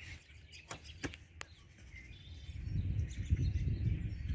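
Handling noise from a handheld phone camera being moved: a few light clicks in the first second and a half, then a low rumble that grows in the second half as the camera is swung to a new view. Faint bird chirps in the background.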